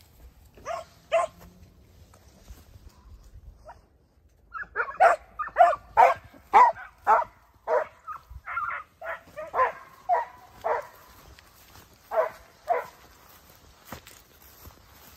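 Segugio Italiano hounds barking: two barks about a second in, then a run of barks at about two a second from about five seconds in until near the end, a few of them drawn out longer.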